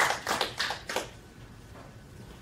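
Scattered applause from a small audience, a few pairs of hands clapping unevenly, dying away about a second in to quiet room tone.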